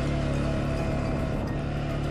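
CF Moto 520L ATV's single-cylinder engine running at a steady pace while riding over grass, a constant hum with no gear change or rev.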